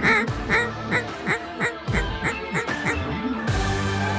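Duck call blown in a run of about ten quacks, each one shorter and quicker than the one before, over background music that swells near the end.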